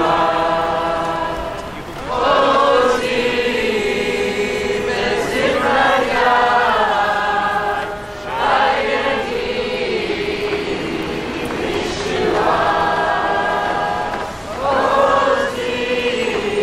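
A crowd singing together without instruments, in slow, drawn-out phrases with a short break about every six seconds.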